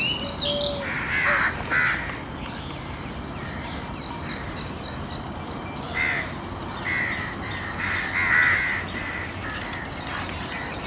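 Harsh, cawing bird calls: two about a second in, then a run of them from about six seconds, the loudest near the end. Faint small-bird chirps and a steady high hiss lie underneath.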